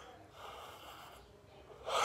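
A man yawning behind his hand: a long, faint breathy sound.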